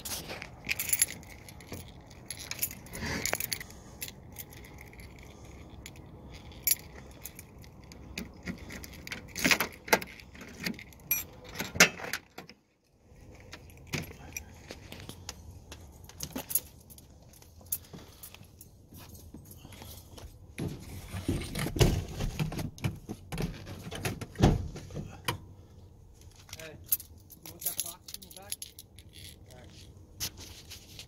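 A set of keys jangling among irregular clicks, knocks and handling noises as a pickup truck's door is opened and someone climbs into the cab, with a couple of heavier thumps past the middle.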